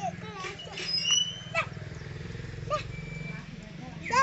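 Short voice-like calls and a few high chirps over a steady low hum with a fine pulsing texture.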